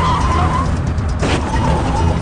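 Cartoon car-chase sound effects: car engines running hard, with a short tyre squeal near the start and again past the middle, over music.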